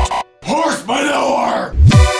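Dubstep track at a break: the beat cuts out just after the start, then a voice-like synthesized 'monster growl' bass sound glides for about a second, and a deep bass sweep near the end leads straight into the drop.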